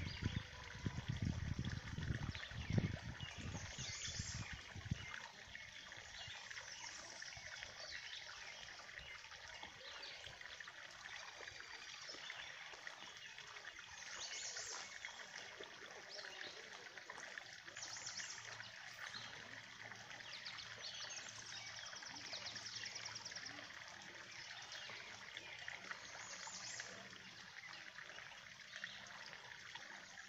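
Steady trickle of water spilling from a drain pipe into a pond, with birds chirping now and then over it. Low rumbling in the first few seconds.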